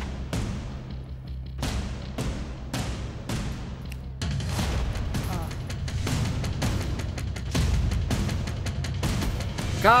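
Suspense background music with a steady beat of heavy percussive hits over a deep low drone, growing denser about four seconds in. Near the end a short, loud sound effect with a gliding pitch sounds.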